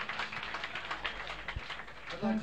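Scattered clapping and crowd noise from a small live audience between songs, with a single low thump about one and a half seconds in.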